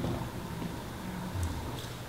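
Low, steady room noise of a large hall in a pause between spoken lines, with a faint low thud about one and a half seconds in.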